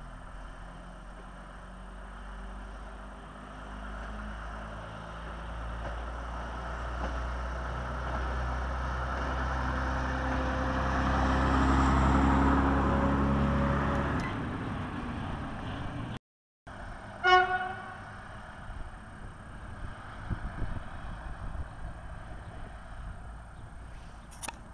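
Diesel rail work draisine (track maintenance vehicle with a loading crane) approaching and passing along the track: its engine and wheel noise grow louder to a peak about halfway through, then fade away. Later, one short horn toot, the loudest sound.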